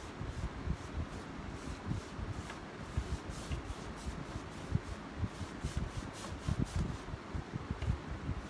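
Paintbrush working back and forth over a wooden dresser, blending wet chalk paint in quick, irregular brushing strokes.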